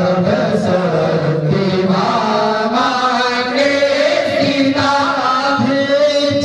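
A young man's voice chanting a Sanskrit mantra into a handheld microphone, in a sung, melodic line whose pitch glides between held notes.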